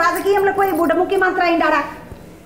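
Speech only: a woman talking animatedly, breaking off shortly before the end.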